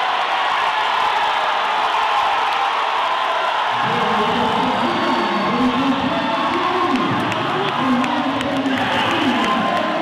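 Futsal crowd cheering a goal. About four seconds in, a loud, pitch-bending voice or chant rises over the steady crowd noise.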